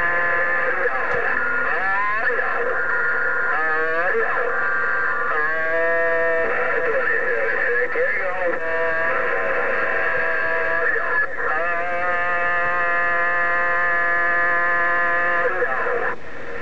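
Received transmission playing through a President HR2510 radio's speaker: held, warbling tones with strong overtones that change pitch every second or two, thin and band-limited like radio audio.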